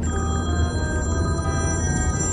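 A sustained bright, bell-like ringing tone made of several high notes, over the steady low rumble of a car cabin on the road.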